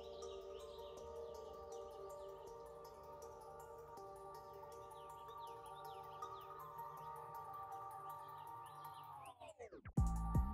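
Soft ambient background music of steady sustained tones with repeated bird-like chirps above them. Near the end the whole sound sweeps sharply down in pitch and cuts out, like a tape-stop.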